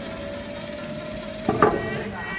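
A wooden studio box or stool set down on the floor with a short, sharp knock about one and a half seconds in, over quiet background music.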